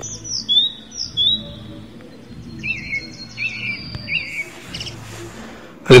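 Small birds chirping over soft background music: a few short chirps in the first second and a half, then a quicker run of repeated chirps about halfway through.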